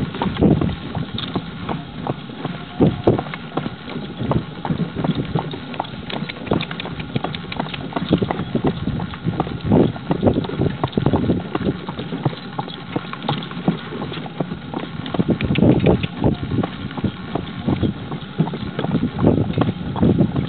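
Hooves of a Percheron/Arabian cross horse clip-clopping steadily as it pulls a four-wheel carriage.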